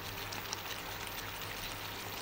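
Chicken in a thick semi-dry gravy cooking in a pan, giving a steady, low sizzle with faint crackling.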